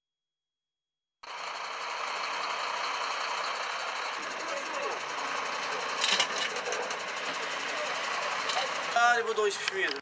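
Truck's diesel engine running steadily with a fast, even knock, starting about a second in. A man's voice comes in near the end.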